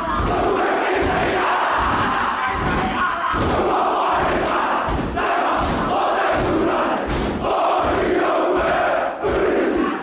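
A large group of schoolboys performing a haka: many voices shouting the chant together, with rhythmic stamping heard as low thuds underneath.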